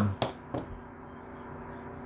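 A faint, steady hum with a short, sharp click about a fifth of a second in and a softer click about half a second in.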